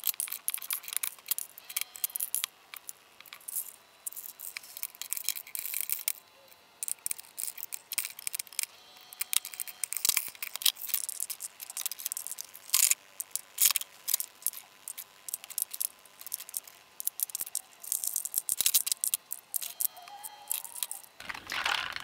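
Lipstick tubes clicking and clattering against each other and against a clear acrylic lipstick organizer as they are picked from a drawer and set into its slots: a steady stream of quick, sharp clicks.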